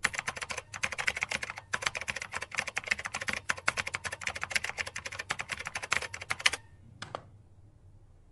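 Fast typing on a computer keyboard: a rapid run of key clicks with two short breaks in the first two seconds. The run ends on a hard keystroke about six and a half seconds in, followed by one brief burst of keys.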